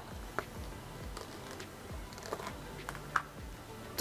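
A few faint clicks and taps of a plastic food container being handled and its snap-on lid unclipped, over quiet room tone.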